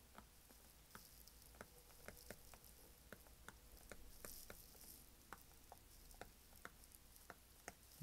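Faint, irregular taps and light scratching of a stylus tip writing on a tablet's glass screen, two or three small clicks a second.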